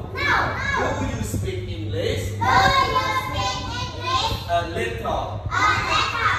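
Children's voices chattering and calling out, several at once, over a steady low hum.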